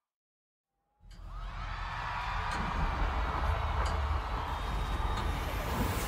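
Silence for about a second, then live-concert ambience fades in: a steady roar of crowd noise over a deep rumble, growing louder.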